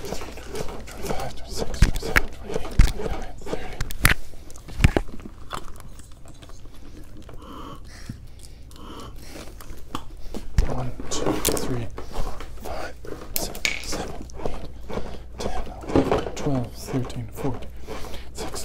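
Handling noise around a CPR training manikin: scattered sharp clicks and knocks in the first few seconds, a quieter stretch, then low talk in the second half.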